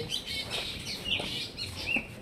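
Birds chirping: a quick run of short, high chirps and brief falling notes.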